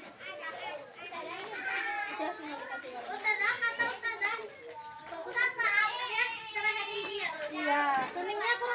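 Several children's high voices talking and calling out at once, overlapping chatter that grows louder about three seconds in.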